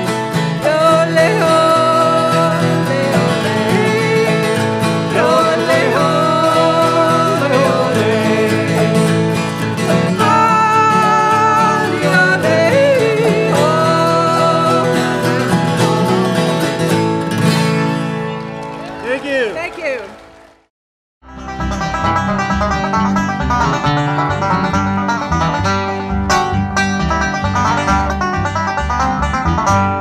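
Autoharp and acoustic guitar playing the closing instrumental bars of an old-time song, ringing out and fading about 19 seconds in. After a brief silence, a different piece of acoustic music begins.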